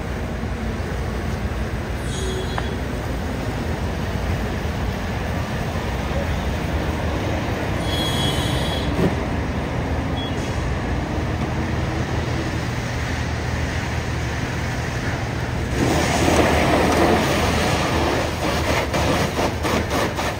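Low, steady drone of fire apparatus diesel engines running at the scene, mixed with highway rumble. About sixteen seconds in, a louder rushing hiss sets in and lasts to the end.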